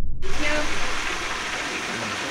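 Fish frying in hot oil, a steady sizzle that cuts in abruptly just after the start, with a faint voice underneath.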